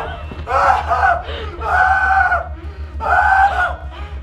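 Excited shouting and screaming voices, about four long held cries in a row.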